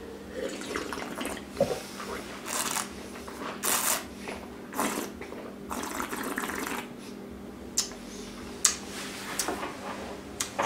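Red wine being sipped and slurped in the mouth, a series of short noisy slurps and swishes, followed by a few short sharp clicks near the end.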